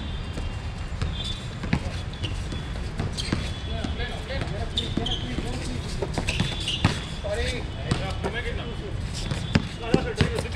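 Basketball dribbled on a hard outdoor court, its bounces coming as sharp thuds in an irregular rhythm, with distant shouting from players.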